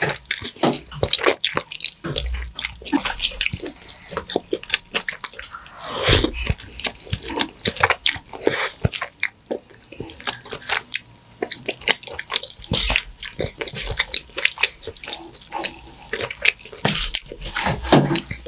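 Close-miked wet eating sounds of creamy shrimp alfredo pasta: noodles being slurped and chewed, with many irregular sticky mouth clicks and smacks.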